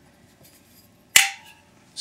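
A magnet snapping onto a steel water-heater burner plate: one sharp metallic click about a second in, with a short ring. It sticks, which marks the part as ferrous steel.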